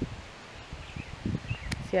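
Outdoor wind noise with low rustling and buffeting on the microphone, a single sharp click near the end, then a woman saying "yeah".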